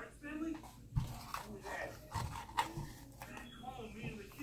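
Light clicks and knocks of a baking powder tub being picked up and handled over a mixing bowl, with a sharp click about a second in, under faint speech.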